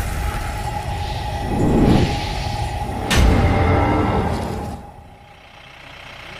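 Dark intro sound design: whooshing sound effects over a low rumble and a held tone, with a boom about three seconds in, dying down just before the end.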